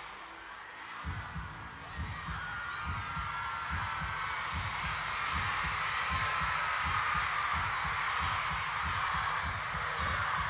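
A deep, heartbeat-like bass pulse played over the PA as a concert intro, starting about a second in and repeating evenly, over a large crowd screaming and whistling that grows steadily louder.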